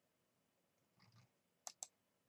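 Near silence, broken near the end by two quick, sharp clicks at a computer.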